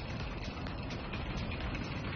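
Crazy Time bonus-round wheel spinning: a steady rumbling whir with dense, fast ticking.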